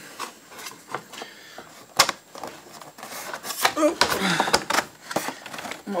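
Knocks, clicks and rattles of a 3D printer's case panel being handled and fitted back on, with one sharp knock about two seconds in.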